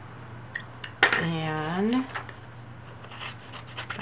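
Metal scissors picked up off a desk with a sharp click about a second in, then a few light clicks as they start cutting into paper.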